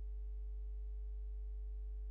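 Steady electrical mains hum in the recording, a low drone with fainter higher overtones, unchanging throughout.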